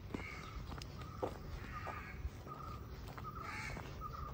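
Crows cawing a few times in the trees, the two clearest calls a little before halfway and near the end, with a few sharp footstep taps on the paved path.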